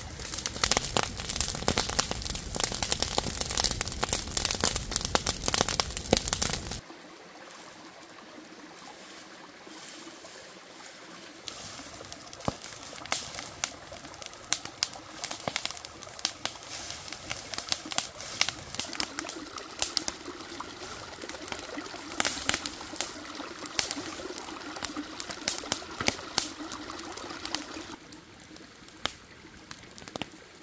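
An open fire of dry leaves and brush crackling and popping, loud and dense at first, then cutting to a quieter fire with scattered sharp pops about seven seconds in.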